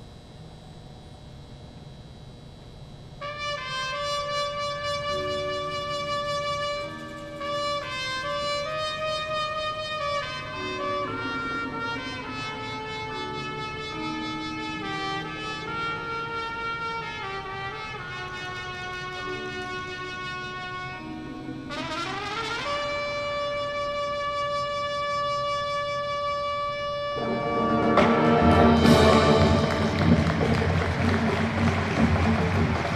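High school marching band's brass playing a slow melody of long held notes, starting about three seconds in. About two-thirds through the pitch sweeps upward, and near the end the music swells much louder with the full band.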